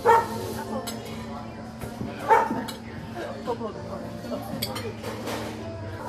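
Cutlery clinking on plates at a meal table, with two short loud calls about two seconds apart, the first right at the start.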